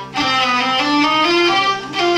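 Three hurdy-gurdies playing together: a melody moving note by note over steady drones. The sound dips briefly just after the start and again near the end.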